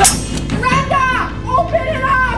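Children's high-pitched voices calling out in two short bursts over a music soundtrack, opening with a sharp hit.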